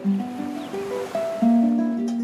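Classical guitar playing a slow plucked melody over ocean waves washing on a shore, with one wave swelling up and fading through the middle.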